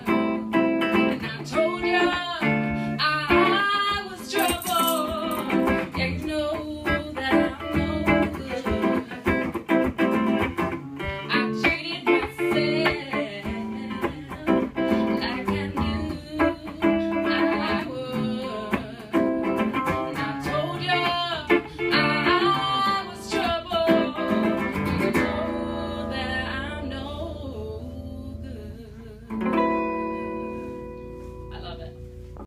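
Electric guitar playing a lead with bent, wavering notes, then a held chord left to ring and fade near the end, and a fresh chord struck just before the end.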